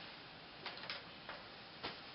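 Four faint, sharp clicks over quiet room hiss.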